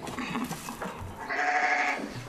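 A sheep bleating once: a single held bleat of under a second, starting a little past halfway.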